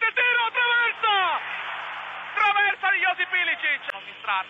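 Male football commentator speaking rapidly over a stadium crowd. The crowd noise is heard on its own for about a second in the middle.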